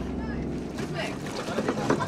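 Wind buffeting the microphone and sea noise aboard a small boat, with faint voices in the background.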